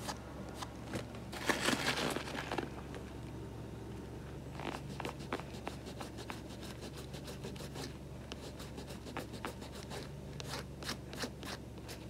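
Thumb rubbing glue residue off the white leather upper of a Puma BMW Motorsport Court Guard sneaker: a run of small scratchy rubbing strokes and clicks, with a louder rubbing stretch about a second and a half in.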